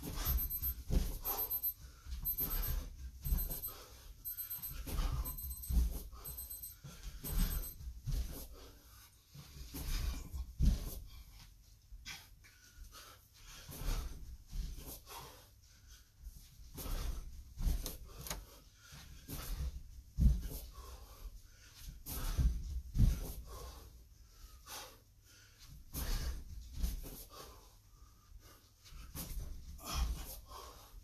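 Heavy panting from a man doing bends and thrusts, with a dull thump of hands and feet on a carpeted floor at each repetition, in a steady rhythm about every second or two.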